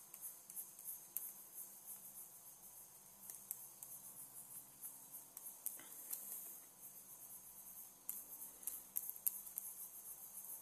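Faint, irregular small ticks and taps of a pen stylus working on a graphics tablet, over a steady high hiss.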